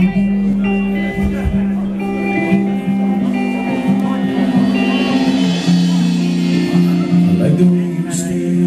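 Live rock band playing a song's intro on guitars and bass: picked guitar notes ring over sustained low bass notes.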